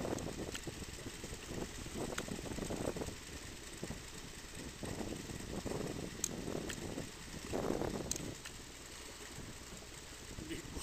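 Low, uneven rumble of a small boat at sea that swells and fades every second or two, with a few sharp clicks as the landing net and gear are handled.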